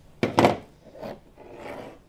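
Handling noise from hands moving right at the microphone: a sudden loud scrape near the start, a softer knock about a second in, then a rubbing rustle.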